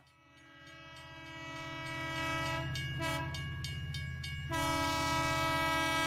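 Train sound effect: a train horn sounding a steady chord over the low rumble and clatter of a rolling train, fading in over the first two seconds. Part of the horn chord drops out in the middle and comes back near the end.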